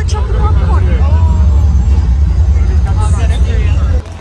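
Loud, steady low rumble with faint voices of people behind it; it cuts off suddenly at the end.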